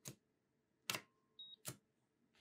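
Coating thickness gauge probe being set down on and lifted off a steel reference block with a calibration foil: three short, sharp clicks, at the start, about a second in and near the end. Between the last two, the gauge gives one brief high beep as it records a reading.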